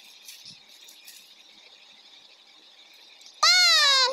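Quiet room sound for about three seconds, then near the end a child's loud, high-pitched, drawn-out squeal whose pitch falls slightly.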